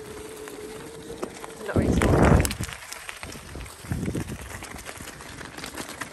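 Electric bike rolling over a loose gravel track, its tyres crunching and ticking on the stones. A steady motor whine runs until a loud low rumble rises about two seconds in, with a smaller rumble near four seconds.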